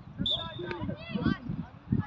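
Indistinct voices calling out, several overlapping at once, some high-pitched like children's, with no clear words.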